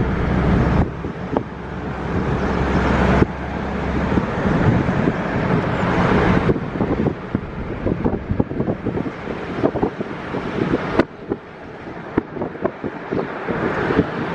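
Road and wind noise of a moving car, heard from inside: a steady rush of tyres and air. It changes abruptly several times as short clips are cut together.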